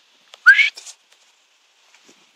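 A single short whistle rising in pitch, about half a second in, used to call a pet common raven to fly to the handler's glove.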